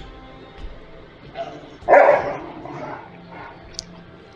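German Shepherd barking, one loud bark about two seconds in after a softer one just before, over faint background music.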